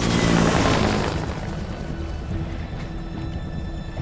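Helicopter rotor chop, loudest in the first second and then fading, mixed under a film score that holds sustained notes from about halfway in.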